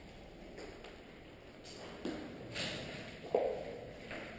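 Footsteps and shuffling on a gritty concrete floor, with a few sharp knocks in the second half, the loudest about three seconds in.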